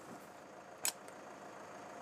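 A single short, sharp pop of a tranquilliser dart gun being fired, just under a second in, over faint steady background noise.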